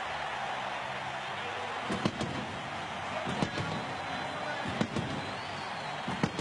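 Steady stadium crowd noise as heard in a football TV broadcast, the home crowd cheering a touchdown, with a few sharp knocks about two, three and a half and five seconds in.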